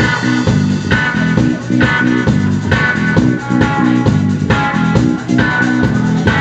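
Live rock band playing an instrumental passage: electric guitar chords repeating in a riff about once a second over bass and drums, with no singing.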